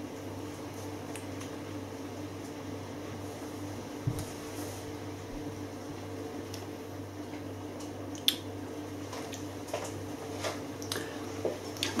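Quiet room tone with a steady low hum, broken by a few faint clicks and taps.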